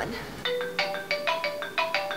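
Mobile phone ringtone: a quick melody of short chiming notes, starting about half a second in.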